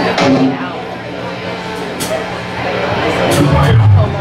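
Electric guitar and bass sounding loosely through stage amps between songs: scattered notes over a steady low hum, with a sharp click about halfway and a low note swelling near the end. Voices in the room sit underneath.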